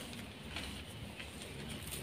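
Faint, soft sifting and crumbling of powdered gym chalk in the hands, with a few light ticks, between louder crushes. A bird calls faintly in the background.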